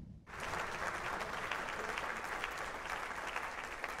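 Crowd applause, a dense steady clapping that starts suddenly just after the beginning and begins to fade at the end.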